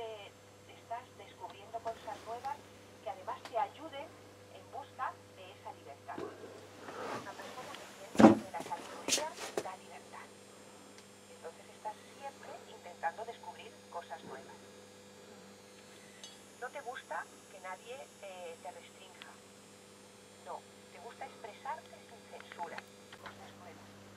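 Faint, thin-sounding talk from a broadcast coming through the Becker Mexico valve car radio's loudspeaker, over a steady low hum. A knock about eight seconds in, with a lighter one a second later.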